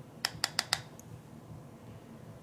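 Four quick, light taps of a makeup brush against an eyeshadow palette, about a fifth of a second apart, all in the first second.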